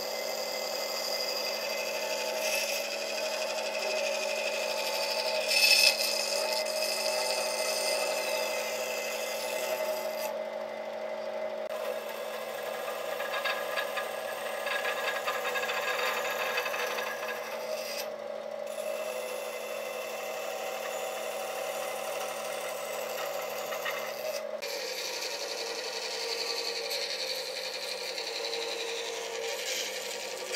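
Bandsaw running with a steady motor hum while its blade cuts through a round log, the sawing noise rising and falling as the wood is fed. There is a brief sharp knock about six seconds in.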